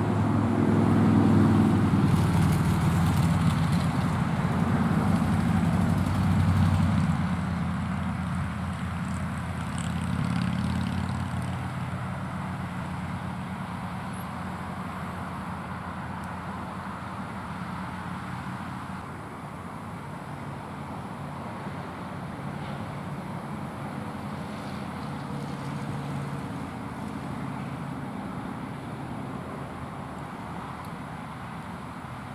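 Bucket truck engine running to power the boom. It is louder for the first seven seconds or so, then settles to a steadier, lower hum.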